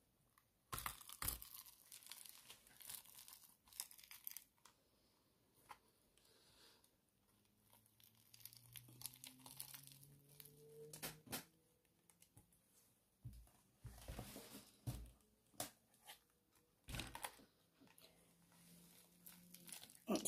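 Silicone mould being peeled off a cured resin casting: irregular tearing, crackling and rubbing sounds in bursts as the rubber comes away from the resin.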